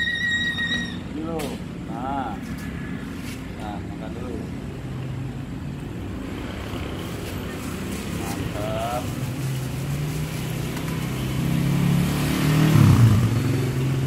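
A motor vehicle engine running, growing steadily louder to a peak near the end as it passes close by. A brief steady high tone sounds for about a second at the very start.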